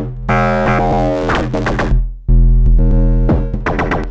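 Noise Engineering Basimilus Iteritas Alter synth drum voice in a Eurorack modular playing deep pitched notes, a new one struck about every two seconds. Each note's tone sweeps and shifts as recorded CV played back from a EuroPi moves its decay, harmonics, fold and morph. The first note is harsh and noisy, a sound called a bit too angry.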